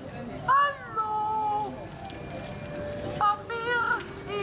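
High, drawn-out, wordless voice calls from the recorded sound track of the Holle Bolle Gijs talking waste-bin figures: one rising then held call about half a second in, and more calls near the end.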